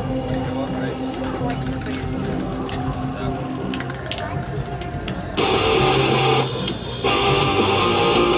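Music with strummed guitar, which gets louder and fuller about five seconds in.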